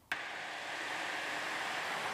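Steady outdoor background hiss, an even rushing noise that starts abruptly and holds level.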